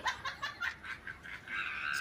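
A boy giggling in a quick run of short, breathy laughs, his voice rising into speech near the end.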